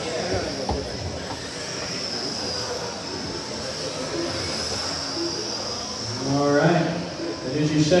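High whine of several 1/12-scale GT12 electric RC pan cars racing, swelling and fading as the cars pass, with a man's voice coming in near the end.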